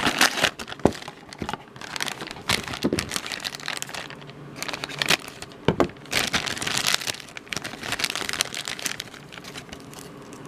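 Black foil blind bag crinkling and rustling in the hands as it is handled and opened, in an irregular run of crackles.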